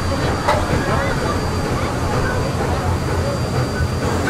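Steady low rumble of a paddle-wheel riverboat under way, with faint chatter of passengers on board and a single light click about half a second in.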